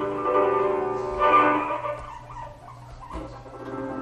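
A guinea pig sound processed through Csound resonators, heard as a ringing, pitched synthesized tone from the speakers while the resonator filter is adjusted with a MIDI keyboard knob. It swells brighter and louder about a second in, then fades back.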